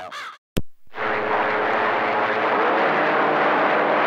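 CB radio: a last word of speech cuts off, a sharp click follows about half a second in, and from about a second in the receiver gives a steady hiss of static with a faint hum under it as an incoming station's carrier comes up.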